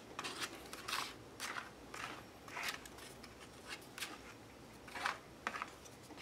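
A plastic card dragging gesso across glued book-page paper on a canvas board, in a quick series of short scraping strokes.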